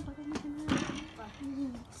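A young person's wordless voice in drawn-out, held tones, with a short knock about three-quarters of a second in.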